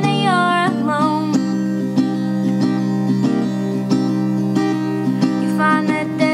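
Small-bodied acoustic guitar strummed through steady chords, with a woman's sung line ending about half a second in; the rest is guitar alone between vocal lines.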